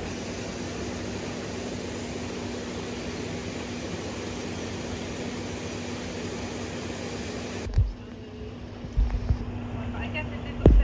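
Hot tub jets running: a steady rush of churning, bubbling water with a low pump hum. It cuts off suddenly near the end, and a few dull thumps follow.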